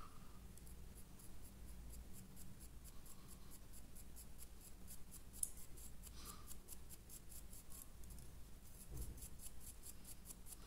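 Faint, quick scratchy strokes of a stiff paintbrush, several a second, as it is dry-brushed back and forth over the rough, textured stonework of a model, over a low steady hum.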